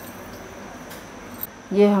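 Faint, steady pour of the water that the bottle gourd was boiled in, from a steel vessel into a pan of masala paste, thinning it into a gravy.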